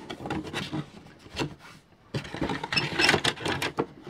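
Cardboard box flaps rustling and loose hard plastic model parts clicking and scraping as they are lifted out of a freshly opened toy box. The sound is a quick run of small clicks and scrapes that goes quieter for a moment around the middle.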